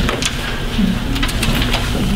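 Sheets of paper handled and shuffled on a meeting table: a few short rustles and light clicks over a steady low room hum.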